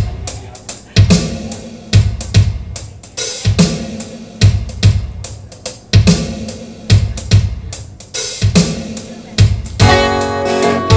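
Drum machine playing a steady rock beat of kick, snare and hi-hat through the PA as the song's intro, before any guitar or harmonica comes in.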